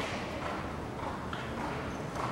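Hoofbeats of a horse cantering on arena footing: a run of dull, roughly evenly spaced strikes.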